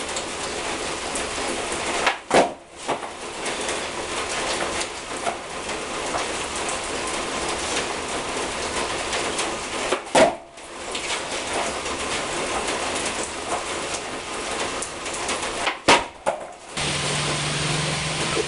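Steady rain falling throughout, with three loud skateboard ollies about two, ten and sixteen seconds in. Each one is a quick double clack: the board's tail snapping down on concrete, then the board landing.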